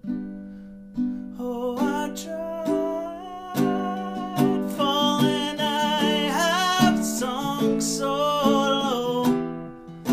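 Ukulele strummed chords with a man singing over them. A chord rings and fades in the first second before the strumming picks up again. From about the middle, a held, wavering vocal line sits on top.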